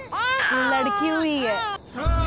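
A newborn baby crying: a run of short, high cries, each sliding down in pitch, breaking off briefly near the end.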